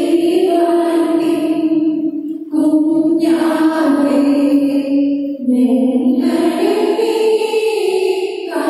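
Devotional hymn sung in long, held phrases, with short breaks between phrases about every two and a half seconds.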